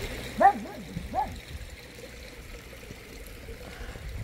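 Small pond waterfall running steadily, with two short whines from a puppy about half a second and a second in, each rising and falling in pitch.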